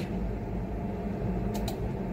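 Two quick keystrokes on a laptop keyboard about one and a half seconds in, over a steady low room hum.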